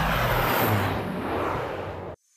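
Twin-engine propeller airplane passing low overhead, its engine and propeller noise dropping in pitch as it goes by, then fading near the end.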